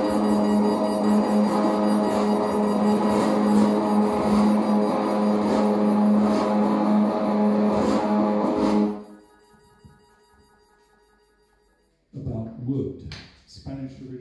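A live band's sustained drone of electric guitar and keyboard electronics, a steady low note with a high whine above it, cuts off abruptly about nine seconds in. After a few quiet seconds a man's voice starts at the microphone near the end.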